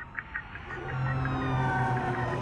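Intro sound design of a music video: a few short chirps at first, then several thin tones sliding slowly downward over a steady low tone that swells in.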